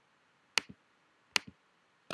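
Two computer mouse clicks about a second apart, each a sharp press followed by a softer release, as on-screen buttons are selected one by one.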